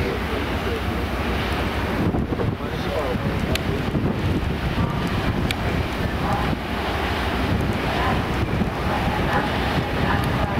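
Steady wind rushing over the microphone on the open deck of a moving ferry, a dense low rush with the sea and ship noise under it.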